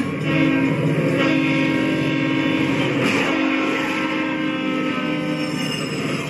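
Train horn sounding one long, steady blast as a freight train crosses, ending about five and a half seconds in.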